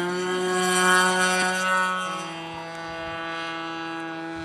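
Tower Hobbies .75 two-stroke glow engine on a Great Planes Stick 60 RC model plane at full throttle on takeoff: a steady high-pitched whine, loudest about a second in as the plane passes close, then a step down in pitch about two seconds in as it climbs away.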